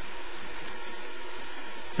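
Ground beef, mushroom and broth mixture simmering in a stainless skillet: a steady, even bubbling hiss.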